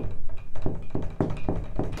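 A quick, uneven run of light taps or knocks, about four or five a second.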